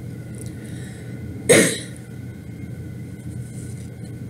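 A single short cough about a second and a half in, over a steady low background hum.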